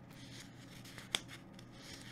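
Faint rustling handling noise with one sharp click a little over a second in.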